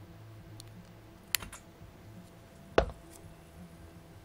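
A plastic soda bottle handled and set down after a drink: a sharp click about a third of the way in, then a louder knock near three seconds.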